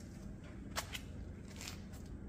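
Quiet room tone with a steady low hum, and a few faint light clicks: two close together about three-quarters of a second in, another near the end.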